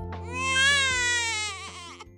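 A baby's voice: one long, high-pitched vocal sound that rises and then slowly falls, over soft background music that fades out at the end.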